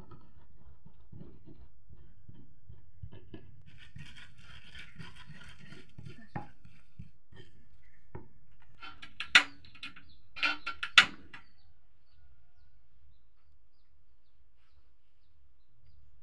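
Stone pestle pounding and grinding sambal ingredients in a wooden mortar: a run of soft, dull thuds and scrapes. A few short, loud, sharp sounds come about nine to eleven seconds in.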